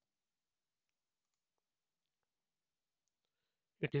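Near silence with a few very faint clicks, then a man's voice starts speaking just before the end.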